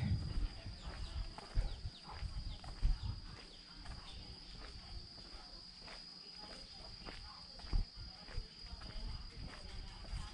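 Footsteps walking on a packed-earth and concrete path: irregular soft thuds, with a sharper knock about three seconds in and another near the end. Behind them a steady high-pitched insect drone.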